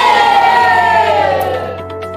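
A group of children shouting together, holding the last syllable long so that it slowly falls in pitch and fades out about a second and a half in, over background music.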